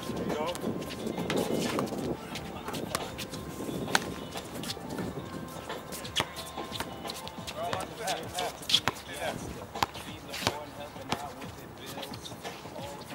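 Basketball pickup game: a ball bouncing on a hard court and shoes hitting the court in scattered, irregular thuds, with players' voices calling out now and then.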